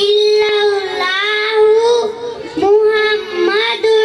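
A young child's high voice chanting an Islamic prayer (a dua or kalma) in a sing-song melody, amplified through a microphone, in short phrases with brief breaks.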